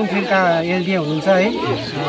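Chicks peeping in a bamboo basket, with people talking over them.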